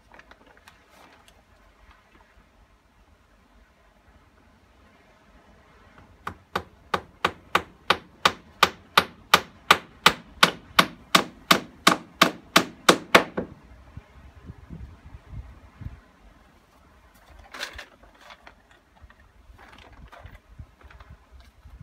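A hammer driving a nail into a timber board: about 25 quick, evenly paced strikes, roughly four a second, growing louder over the first couple of seconds and then stopping.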